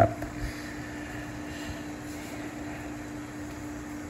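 Steady low hum with a faint hiss underneath: background room or equipment noise, with no distinct event.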